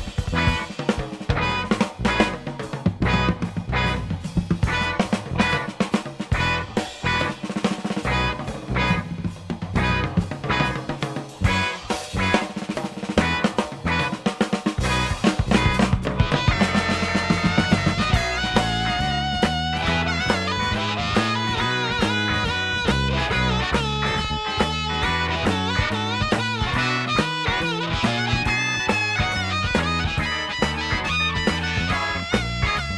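Instrumental break of a blues-rock band: busy drums and guitar for the first half, then from about halfway a lead line of held, bending notes over bass and drums.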